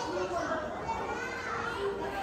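Children's voices talking and calling softly, quieter than the presentation speech around them.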